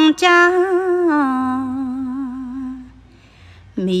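A solo voice chanting Khmer smot: one long melismatic note that steps down in pitch about a second in and dies away about three seconds in, with a new phrase starting near the end.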